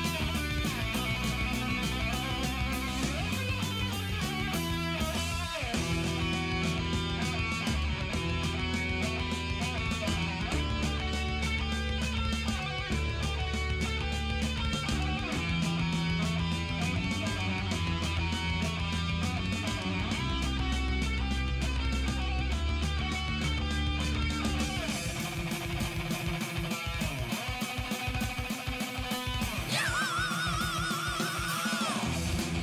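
Heavy metal band playing an instrumental passage with no singing: electric guitar over bass and drums.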